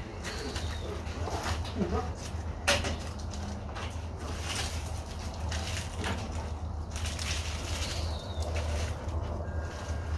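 Gloved hands handling soil-covered aloe clumps over a large pot: rustling and soil falling, with one sharp knock a little under three seconds in. Birds call in the background over a steady low hum.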